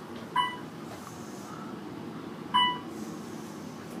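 Otis elevator car chime beeping twice, about two seconds apart, as the moving car passes floors, over the steady hum of the car travelling.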